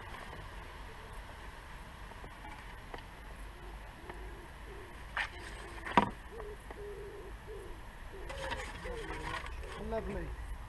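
A pigeon cooing repeatedly in the background over a steady low rumble, starting a little past halfway. Two sharp knocks come just before the cooing, about five and six seconds in, the second the loudest sound.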